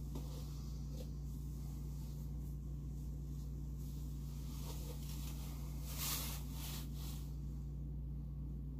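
A steady low hum with a short rustle about six seconds in and a few faint clicks of handling.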